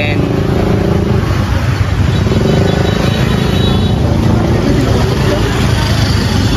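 Steady street traffic noise, mostly motorbikes and cars running past, with voices chattering in the background.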